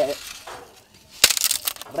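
A sharp crack about a second in, followed by brief crunching, as wood and twigs are broken or pressed together while the fire is being built.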